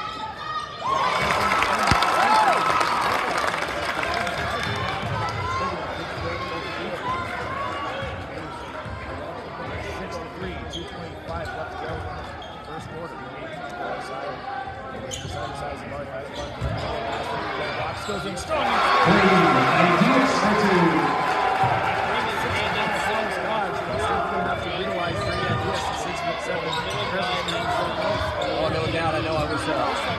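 Gym crowd noise during a basketball game: spectators yelling and calling out, with a basketball bouncing on the hardwood floor. The crowd swells about a second in and again just past halfway.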